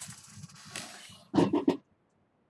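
A person's breathy throat noise, then three quick, louder vocal bursts near the end, in the manner of coughing.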